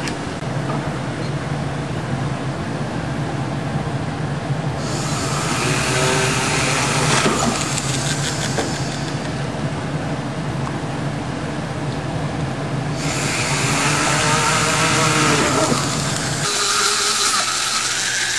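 Jeweler's rotary drill running with a steady motor hum as its bit drills into a small cast silver bell. The high hiss of the bit cutting the metal comes in about five seconds in and again around thirteen seconds. Near the end the hum drops away while a bright hiss carries on.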